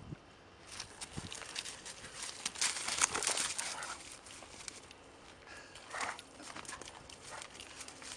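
A boxer and another dog play-fighting on a gravel track: paws scuffing and crunching on the loose stones, with short bursts of dog noise, busiest and loudest about three seconds in.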